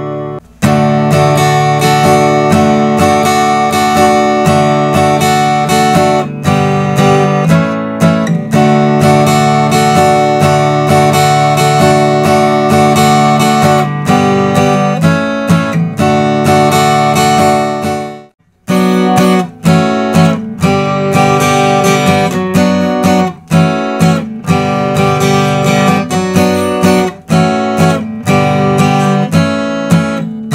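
Steel-string acoustic guitar strummed in a steady rhythm pattern through a chord progression of D, G, A and B minor. The sound drops out for about half a second a little past the middle, then the strumming resumes.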